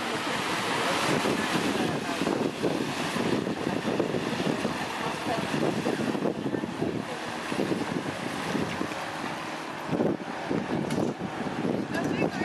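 Wind buffeting the microphone over small waves washing onto a sandy shore, rising and falling unevenly with a brief lull about ten seconds in.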